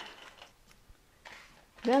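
Soaked black beans tipped from a mesh strainer into a stainless steel pressure cooker pot, a faint soft clatter, with a brief hiss near the end.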